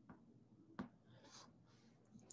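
Faint taps and scratches of a stylus writing on a tablet's glass screen: two sharp taps and a short, soft scratch.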